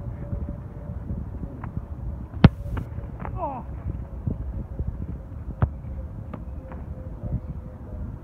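A single sharp thud of a football impact about two and a half seconds in, over a low wind rumble on the microphone, with a few softer knocks after it.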